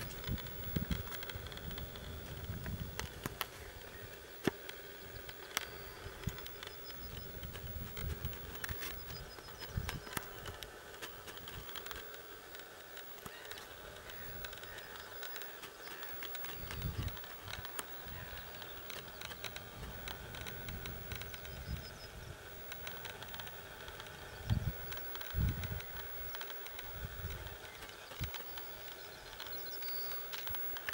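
Outdoor field ambience: insects buzzing, a few faint short bird chirps, and low gusts of wind on the microphone coming and going, with scattered light clicks.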